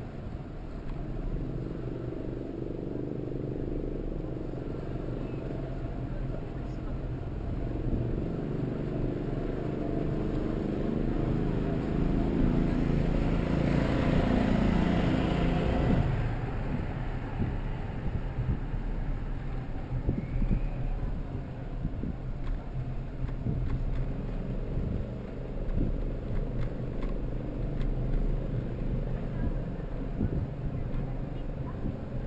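City street noise from a camera on a moving bicycle: steady low road and wind rumble. A motor vehicle passes close, getting louder to a peak about halfway through and then dropping off suddenly. Scattered short knocks and rattles follow in the second half.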